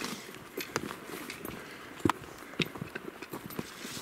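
A hiker's footsteps along a forest trail, with irregular knocks and snaps from brush and branches underfoot, the sharpest about two seconds in.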